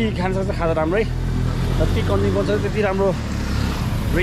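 A motor vehicle driving past on the road: a steady low engine hum with tyre and road noise, fullest about two to three seconds in.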